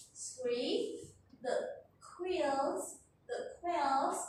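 Speech only: a voice talking in short phrases.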